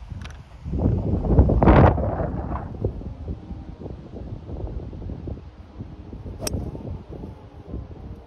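A golf club striking a ball, one sharp click about six and a half seconds in. Wind buffets the microphone throughout, gusting hardest in the first two seconds.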